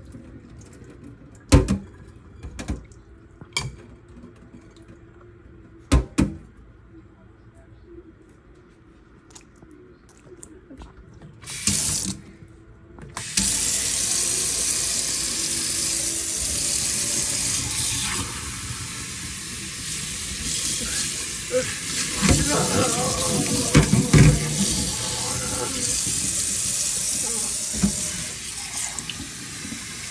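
A few sharp knocks and clunks of things handled in a stainless steel kitchen sink, then about a third of the way in the faucet comes on and water runs steadily into the sink and over a cup and a rubber puppet held in the stream. Louder splashing and handling come about two-thirds of the way through.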